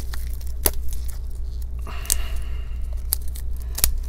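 Metal tweezers and gloved hands handling a laptop screen's plastic bezel: two sharp clicks, one under a second in and one near the end, with a short rustle around the middle. A steady low hum runs underneath.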